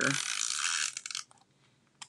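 Handheld tape runner dispensing double-sided adhesive as it is drawn along a strip of cardstock: a steady ratcheting rasp lasting about a second, ending with a few clicks.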